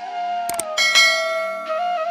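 Soft flute melody in the background music, with a sharp click about half a second in and then a bright bell chime that rings out and fades over about a second: a subscribe-button click and notification-bell sound effect.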